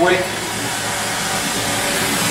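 Gas torch burning with a steady hiss that grows slightly louder toward the end.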